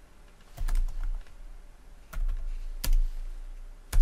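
Computer keyboard keystrokes typing a short terminal command, in small irregular clusters of clicks with a sharp keystroke near the end, over a low steady hum.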